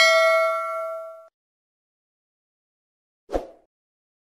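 A single bright bell ding from the subscribe-button notification-bell sound effect, ringing and fading away over about a second. A brief soft knock follows near the end.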